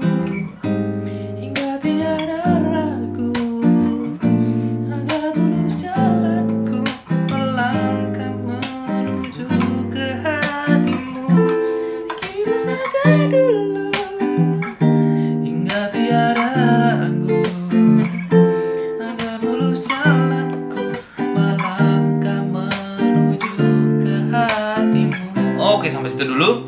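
Taylor 214ce-N nylon-string acoustic guitar playing a jazz chord progression of major-seventh and minor-seventh chords that step down by half steps (BbM7, Am7, AbM7, Gm7, then FM7, Em7, Ebm7, Dm7), each chord plucked and left to ring.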